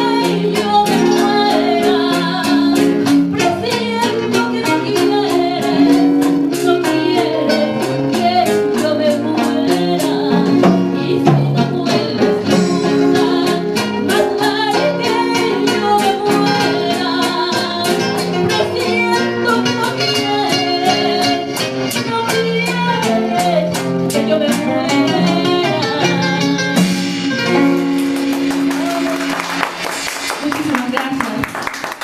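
Live Ecuadorian rockola music: a woman singing with a small band of two acoustic guitars, congas and timbales. The song winds down near the end.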